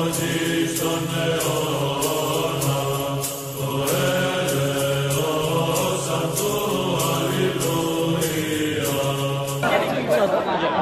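Choral liturgical chant: voices hold long notes over a steady low drone, moving to a new note every second or two. Near the end it cuts off abruptly into crowd talk.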